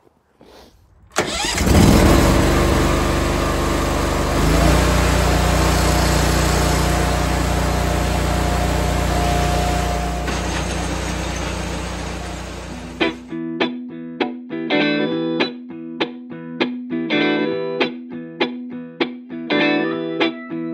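An engine running hard for about twelve seconds, starting about a second in and easing off before it cuts off abruptly. After that, music with guitar and drums.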